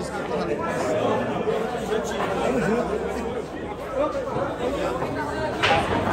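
Crowd of spectators chattering, several voices overlapping in a large, echoing hall, with a brief sharp sound near the end.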